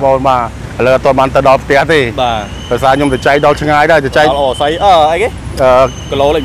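A man talking, conversational speech in Khmer, over a low steady hum of traffic.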